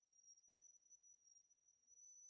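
Near silence, with a faint steady high-pitched tone.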